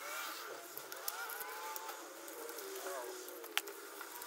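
Cards being pulled from the tight slots of a Louis Vuitton Pocket Organiser and slid into a small card holder: faint, drawn-out squeaks as they rub out of the slots, and one sharp click near the end.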